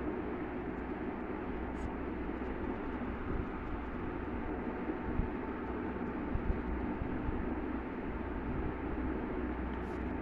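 Steady background rumble and hiss with a few faint clicks.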